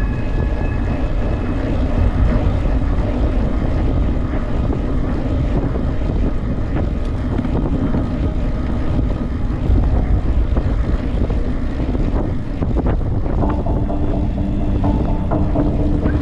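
Wind rushing over the microphone of a camera on a moving bicycle, a steady low roar with no speech, as the bike rolls along the asphalt at speed.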